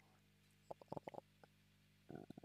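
Near silence with a few faint short clicks clustered about a second in.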